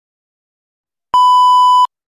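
A single steady electronic countdown beep, starting about a second in and lasting under a second before cutting off sharply, with silence around it.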